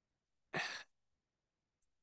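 One short breath into a close microphone, about half a second in, lasting about a third of a second; otherwise near silence.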